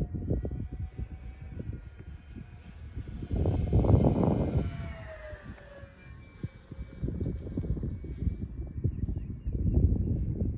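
Electric RC model airplane flying overhead, its motor and propeller giving a faint whine that drops in pitch about five seconds in as it passes. Gusty low rumble of wind on the microphone over it, loudest around four seconds in.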